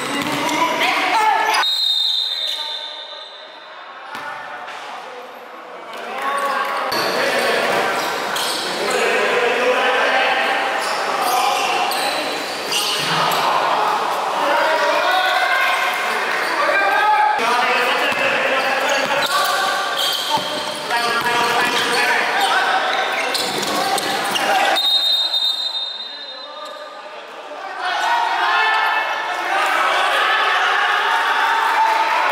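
A basketball being dribbled on a wooden gym floor during play in a large indoor hall, with players' voices calling out over it.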